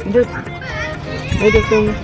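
A few short vocal sounds from a young man, over background music.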